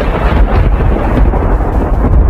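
A loud, deep rumble with a noisy hiss over it, a thunder-like sound effect laid under an animated intro.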